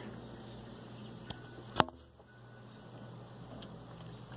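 Faint room noise with a single sharp click a little under two seconds in, preceded by a softer tick.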